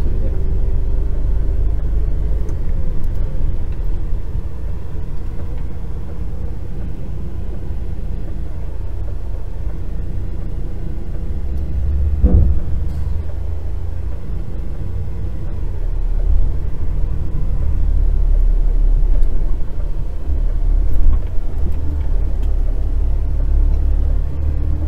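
Heavy lorry's diesel engine running, heard from inside the cab while driving, a low steady rumble. It grows louder in the later part, with one sharp knock about halfway through.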